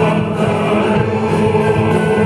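A men's choir and two male soloists singing live with a military band of brass, accordion and drums, played loud and full.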